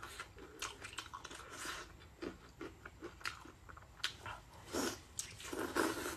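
Close-miked biting and chewing of a chunk of chili-sauced meat: irregular short clicks and mouth noises.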